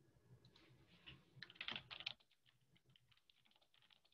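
Faint typing on a computer keyboard: a quick run of key clicks, densest about a second and a half in, then scattered lighter taps.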